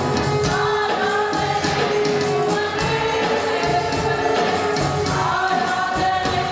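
Live gospel worship music: a woman sings into a microphone over an electronic keyboard and a violin, amplified through the hall's PA speakers.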